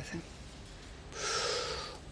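A person's audible in-breath, starting about a second in and lasting most of a second, taken just before speaking. Low room tone comes before it.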